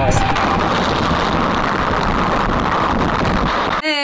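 Steady rushing road and wind noise from a car dashcam recording while driving, cut off abruptly near the end by music with a singing voice.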